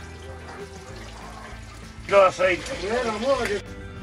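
A quiet stretch of faint low background, then a person's voice for about a second and a half, starting about two seconds in, with music faintly underneath.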